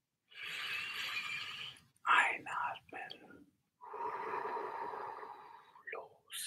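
A man breathing audibly into the microphone as part of a guided breathing exercise: a long breath in, a few short breathy sounds, then a long, slow breath out.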